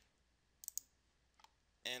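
Faint computer mouse clicks: a quick pair a little over half a second in, then a single click near the end, as filter checkboxes are clicked.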